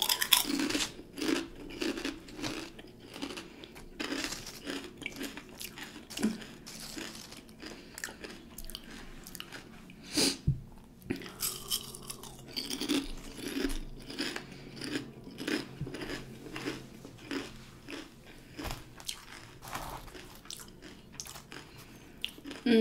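Close-miked chewing and crunching of kettle-cooked potato chips: a steady run of crisp crunches and chews, with one louder bite about ten seconds in.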